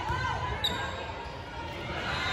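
Indoor volleyball rally on a hardwood gym floor: a sharp smack of the ball being hit about two-thirds of a second in, short sneaker squeaks, and voices around the court, all echoing in the hall.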